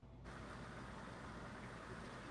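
Faint steady hiss with a low hum underneath: the background noise of the audio feed (room tone), which comes up slightly about a quarter second in.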